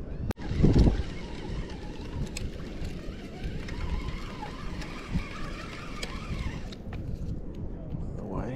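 Steady outdoor wash of wind and water noise, with a brief loud low rumble just under a second in.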